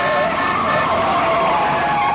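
A car's tyres squealing in a long, wavering skid, with road noise underneath.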